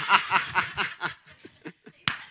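A man laughing, the laugh trailing off into a run of shorter, fading chuckles that die away by the end.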